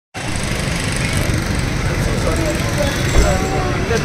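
Busy street noise: a steady low rumble of car engines and traffic close by, with people talking over it, and a single dull thump about three seconds in.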